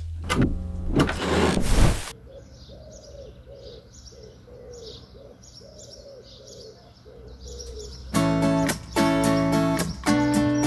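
Band music stops abruptly about two seconds in, giving way to outdoor birdsong: small birds chirping over a low, repeated cooing like a pigeon's. Near the end, strummed guitar chords come in.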